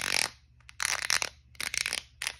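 Plastic sensory fidget bar with rubbery bumps being pressed and rubbed with the fingers, giving three short crunchy, crackling bursts.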